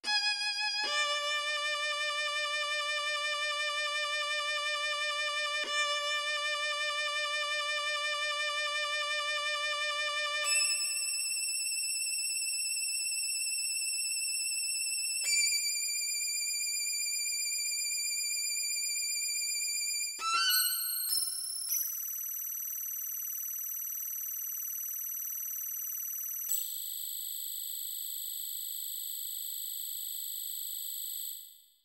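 Computer-rendered solo violin playing a minimal, experimental piece in a few long held notes that change suddenly and climb ever higher. About twenty seconds in comes a quick flurry of notes, and the last held notes are extremely high.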